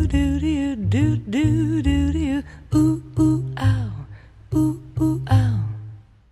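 Closing bars of a slow jazz ballad for female voice, guitar and double bass: a wavering sung line over bass notes in the first half, then a few short plucked guitar-and-bass phrases. The sound dies away at the very end as the track finishes.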